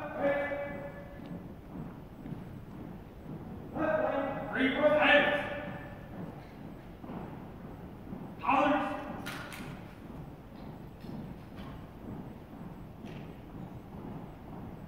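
A color guard commander's drill commands, three long drawn-out shouted calls about four seconds apart, echoing in a large gym. A couple of sharp knocks from the drill movements come near the end.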